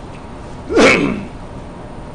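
One sudden, loud explosive burst of breath from a person, about a second in and lasting about half a second.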